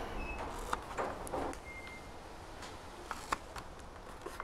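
Fingers pressing and rubbing reinforced tape down over a servo on a foam wing: faint rustling with a few light clicks, a little louder about a second in and a couple of sharper ticks past three seconds.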